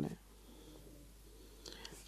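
A man's voice finishes a word, then a short pause of quiet room tone, with a faint intake of breath just before he speaks again.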